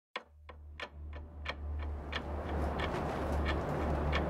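Steady ticking, about three ticks a second, over a low drone, with a hiss that swells and grows louder as it goes on.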